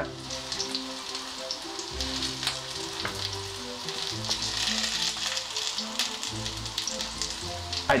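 Parsnips sizzling in oil in a frying pan, a steady hiss, with a few light knife taps on a wooden chopping board.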